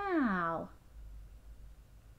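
A woman's voice saying a long, drawn-out "now", its pitch rising then falling, ending about 0.7 s in. After that there is only faint room tone.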